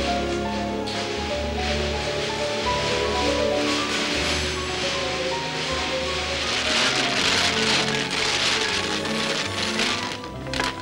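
Background music: a slow melody of held notes over sustained low tones, with a steady hiss underneath that grows louder in the middle.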